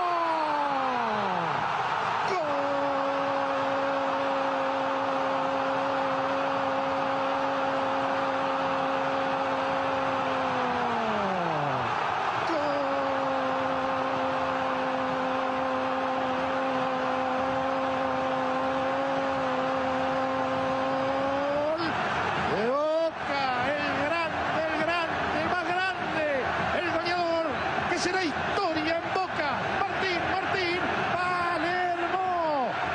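A TV football commentator's goal call: a shouted note held at one steady pitch for about nine seconds, then a second equally long held shout at the same pitch, over the steady roar of a stadium crowd. From about 22 seconds in it gives way to fast, excited shouting.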